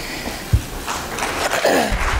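Audience applauding, filling in about a second in, with a single low thump about half a second in.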